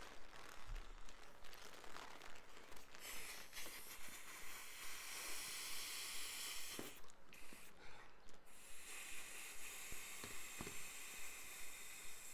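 A printed foil balloon being blown up by mouth: two long breaths of rushing air, the first about three seconds in and the second from about eight and a half seconds on, with light crinkling of the foil and a few small clicks.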